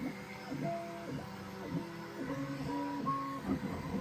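Bambu Lab X1 Carbon 3D printer printing at standard speed, its stepper motors sounding a run of short steady tones that jump to a new pitch with each move, almost like a tune. The printer lacks quiet stepper drivers, so the motors sing audibly.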